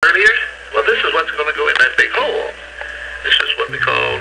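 Voices with music playing underneath and a steady low hum.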